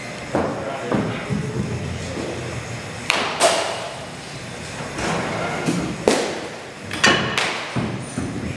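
Several sharp knocks and thuds of baseballs being hit in an indoor batting cage, the strikes coming irregularly, some in quick pairs.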